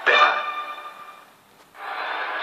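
The closing held note of a beer commercial's jingle, heard through a TV speaker, fading out over about a second. After a brief lull, a steady hiss of stadium crowd noise comes in near the end as the match broadcast resumes.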